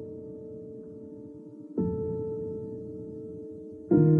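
Slow background music of sustained, ringing notes: a new chord is struck about two seconds in and fades slowly, with another struck at the very end.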